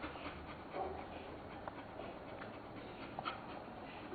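Faint sounds of three-day-old Dalmatian puppies nursing, with soft suckling ticks and a couple of brief small squeaks about a second in and again near the end.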